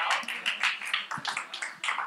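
Scattered hand clapping from a small audience, a quick irregular patter of claps.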